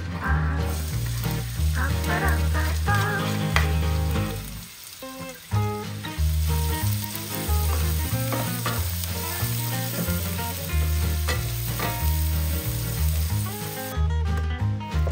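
Diced onion sizzling in hot oil in a frying pan and being stirred with a wooden spatula. The sizzle starts about half a second in as the onion hits the oil and eases briefly near the middle, over background music with a stepping bass line.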